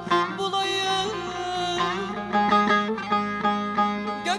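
Turkish folk ensemble playing an instrumental passage on plucked strings such as bağlama and oud, quick notes over a steady low note, with no singing.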